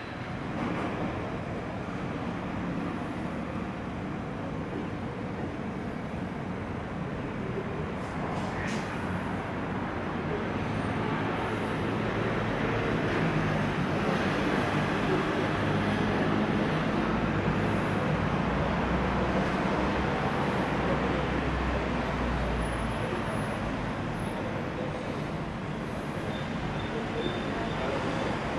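Town-centre street ambience: a steady wash of distant traffic and city noise, with a low rumble swelling for several seconds around the middle.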